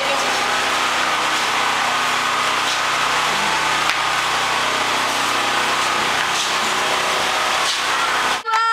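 A steady mechanical drone with a faint low hum, from a small motor running continuously.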